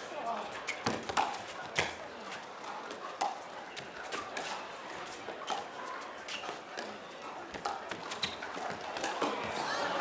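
Pickleball paddles striking the hard plastic ball in a rally, a sharp pop about once a second, over the murmur of an arena crowd. The crowd noise swells near the end as the rally finishes.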